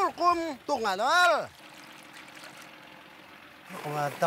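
A man's raised voice calling out with swooping pitch for about a second and a half, then a quieter stretch of faint steady background before speech returns near the end.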